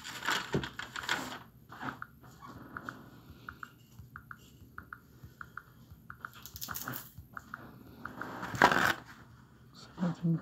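Phone being handled: bursts of rustling and rubbing against the microphone, the loudest near the end, with many light clicks, often in pairs, from fingers tapping the screen.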